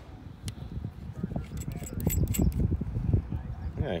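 Small plastic-and-metal clicks and clinks of a power cable being plugged into a TYT TH-8600 mobile radio and its controls handled, most of them bunched in the middle, over an uneven low rumble.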